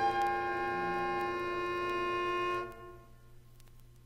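Orchestral wind ensemble holding a chord of several sustained pitches, with a low note pulsing rapidly underneath. The chord cuts off sharply a little past halfway, leaving the rest quiet.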